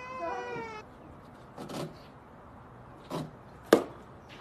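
A high, drawn-out, wavering cry in the first second. Then two short scuffs and a single sharp knock near the end, the loudest sound.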